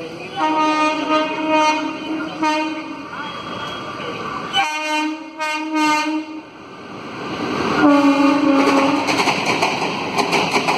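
WAP4 electric locomotive's horn sounding three long blasts as the Jan Shatabdi Express runs through the station without stopping. Near the end the rumble and clatter of the passing train rise in level.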